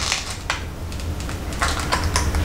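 Fingernails picking at the plastic wrapping of a small packaged item, giving a few small clicks and crinkles: one at the start, one about half a second in, and several close together near the end.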